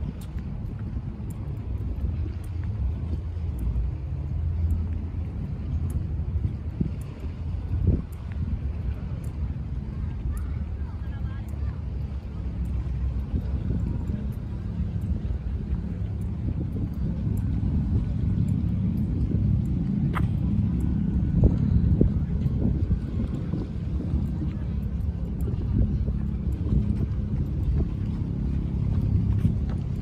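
Wind buffeting the microphone while walking outdoors: a steady low rumble that grows a little louder in the second half, with faint regular ticks over it.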